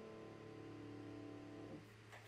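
The final chord of a grand piano ringing softly and dying away, then damped off about three-quarters of the way through.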